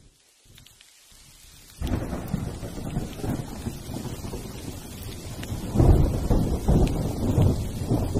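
Recorded thunderstorm opening a song: rain hiss fades in from near silence. A thunder rumble breaks about two seconds in, and a louder roll of thunder comes about six seconds in.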